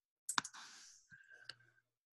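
Faint computer mouse clicks, two sharp clicks about a second apart, with a short soft hiss after the first, as the shared screen is switched from a web browser to a slide presentation.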